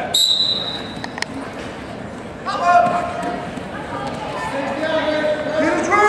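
Referee's whistle: one steady, shrill blast of about a second that restarts the wrestling from the referee's position. Men's voices then shout from the stands and corners, loudest about two and a half seconds in and again near the end.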